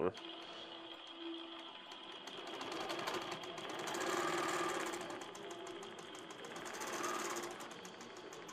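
An Innova longarm quilting machine with AutoPilot stitching by itself under computer control, a rapid, even run of needle strokes over the machine's running noise. It grows louder around the middle, then fades, then rises again briefly near the end.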